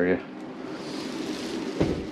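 Light handling noise, then a single dull thump near the end as the hinged RV bed platform, lifted on a gas strut over the under-bed storage, is lowered shut.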